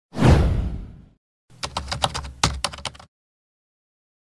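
Intro sound effects for a title animation: a sudden whoosh-like hit with a low boom that fades away within about a second, then, after a short pause, a quick run of typing-like clicks lasting about a second and a half.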